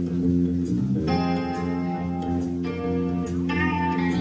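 Live rock band: an electric guitar plays sustained, ringing notes over a steady held bass. New guitar notes come in about a second in and twice more near the end.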